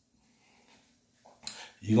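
Near silence, then one short sharp click with a brief soft rustle about one and a half seconds in, just before a man's voice resumes.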